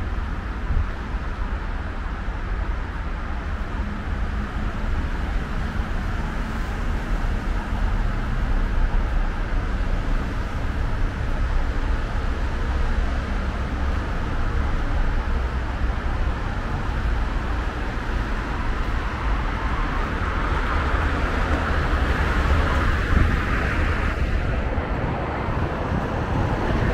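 Steady road traffic noise from the nearby Mittlerer Ring, a continuous rush and rumble of passing cars that grows a little louder toward the end.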